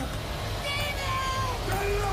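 Trailer sound design: a steady, dense low rumble, with a brief wavering high tone or distant voice in the middle.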